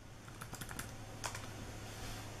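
Typing on a notebook computer's keyboard: a short run of faint key clicks, then one more about a second in.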